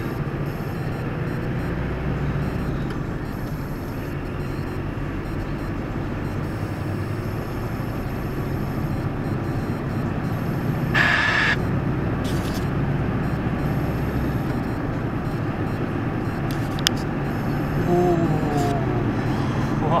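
Steady engine and road drone inside a truck cab at motorway speed, with a short burst of hiss about eleven seconds in and a sharp click near seventeen seconds. A man's brief exclamations near the end.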